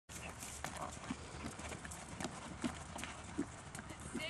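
A horse's hooves thudding on the sand of a dressage arena in an uneven series of soft knocks, over a steady low rumble.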